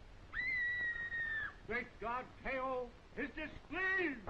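A woman's high, held scream lasting about a second, followed by several short cries, each falling in pitch.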